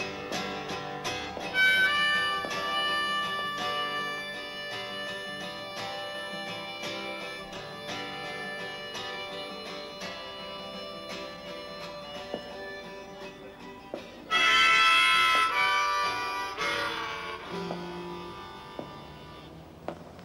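Harmonica solo over a strummed acoustic guitar, an instrumental break in a folk-style song. The harmonica plays long held notes and is loudest in a burst about two-thirds of the way through.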